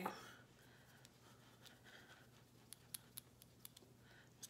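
Quiet room tone with faint, short clicks and taps from hands handling a nail polish bottle, about half a dozen of them in the second half.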